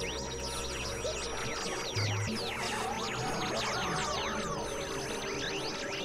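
Experimental electronic synthesizer music: a low drone under a steady high tone, with many quick sweeping pitch glides rising and falling above. A short low pulse sounds about two seconds in.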